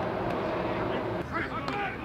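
Outdoor practice-field ambience: a steady low hum, with distant voices calling out from about a second in.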